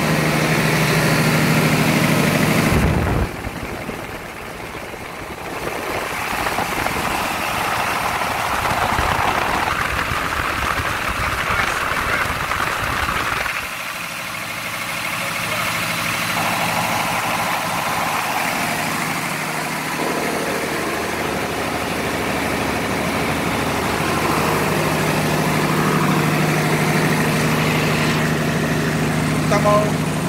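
Diesel engine of an MWM generator set running under a salt-water load bank, its hum changing in level and tone several times, dipping about three seconds in and again around fourteen seconds. The engine is sluggish and short of power under the load, which the owner traces to a restricted fuel supply.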